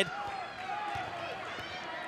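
Gymnasium ambience during live basketball play: a faint murmur of crowd and players' voices, with a few faint thuds from the court.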